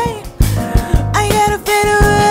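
Live band of drums, bass, keys and guitar backing a female singer: one sung line trails off just after the start, the band plays on for a moment, and a new long held note comes in a little past the middle.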